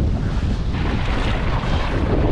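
Wind buffeting the microphone, over sea water sloshing and hissing against the boat's side.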